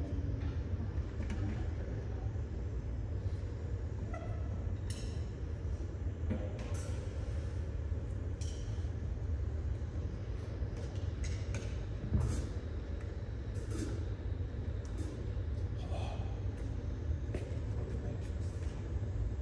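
Hall ambience between performances: a steady low rumble with faint murmured voices and occasional light clicks and knocks, one sharper knock about twelve seconds in. No music is being played.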